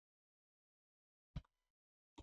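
Near silence, broken about a second and a half in by one short keyboard keystroke click, with a fainter tick just after it.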